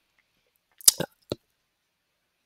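Three sharp clicks in quick succession about a second in, from a computer mouse being clicked.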